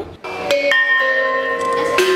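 An ensemble of bossed gongs, some hand-held and some laid in trays, being struck. The first strikes come about half a second in, and several pitches ring on and overlap.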